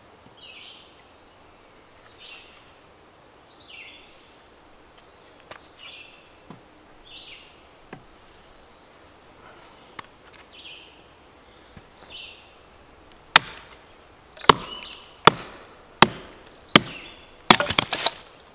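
A songbird repeats a short chirping phrase about every second and a half. Then, from about three quarters of the way in, come about eight sharp chopping strikes of a large knife into knotty wood, quickening near the end.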